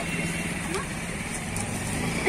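Steady low rumble of road traffic, with faint chatter of people in the background.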